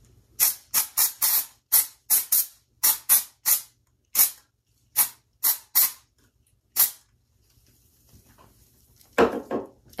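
Batiste aerosol dry shampoo sprayed in a quick series of about fifteen short hissing puffs, stopping about seven seconds in.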